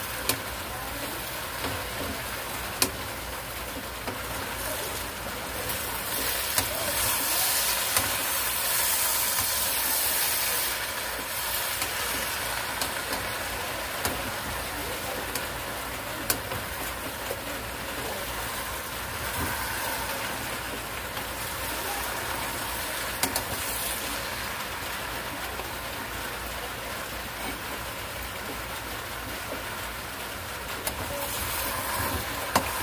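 Bottle gourd, carrots, meat and pancit noodles sizzling in a pan as a wooden spatula stirs them, with a few sharp clicks of the spatula against the pan. The sizzle swells for a few seconds about a third of the way in.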